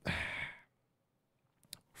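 A man's breath, about half a second long, heard close on a headset microphone during a pause in speech. A short faint click follows near the end.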